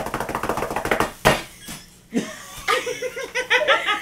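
A drum roll drummed rapidly with the hands on a table, many quick taps ending in one loud slap about a second in. Laughter follows near the end.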